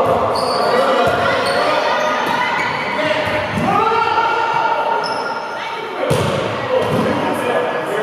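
Volleyball game in a large echoing gym: players calling out to each other, with one long shout about halfway through, thuds of the ball being struck, and short high squeaks of sneakers on the hardwood floor.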